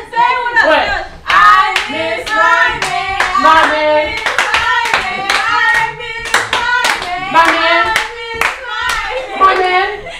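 Rhythmic hand clapping, about two to three sharp claps a second, with live singing voices over it in a chant-like rhythm.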